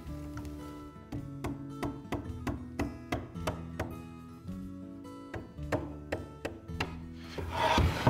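A mallet tapping a wooden leg down onto a clamped frame, a run of light knocks about two to three a second with a brief pause midway, over background music.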